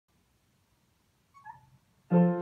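Near silence: room tone, broken about one and a half seconds in by a single faint, brief, high-pitched squeak.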